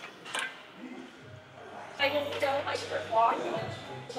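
Metal clinking from a plate-loaded Viking press shoulder machine as a set begins, with a sharp clink just after the start.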